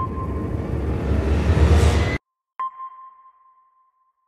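Logo sting: bass-heavy music swelling into a rising whoosh that cuts off suddenly a little after two seconds. After a brief gap comes a single ping at one steady pitch that rings out and fades over about a second.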